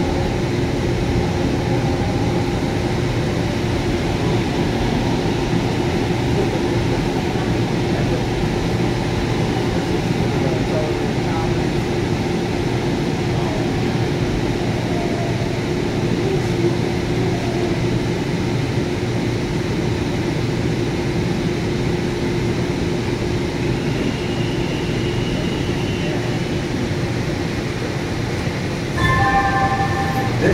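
Breda P2550 light-rail car heard from inside, running with a steady rumble of wheels on rail and a constant hum, slowing as it rolls into a station platform. A few short tones sound near the end.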